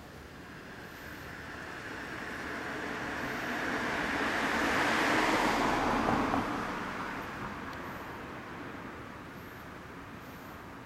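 A road vehicle driving past: its noise swells over about five seconds, peaks near the middle and fades away.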